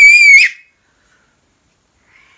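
A toddler's loud, piercing high-pitched scream, held on one slightly wavering pitch, that cuts off about half a second in.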